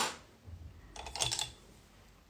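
Small make-up items being handled on a table: a soft knock, then a short cluster of light clicks and rattles about a second in, like a pencil or cosmetic containers being picked up and knocked together.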